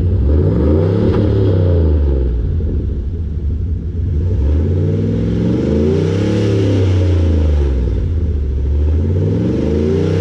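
2000 Dodge Ram pickup's engine heard at its Magnaflow tailpipe, revved up and let fall back to idle. It drops from a rev at the start, idles, swells to a peak about two thirds of the way in, falls again, and starts to climb once more near the end.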